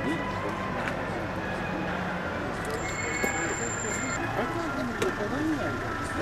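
Indistinct talk of several men outdoors over a steady low hum of street traffic. A faint, thin high whistle sounds for about a second near the middle.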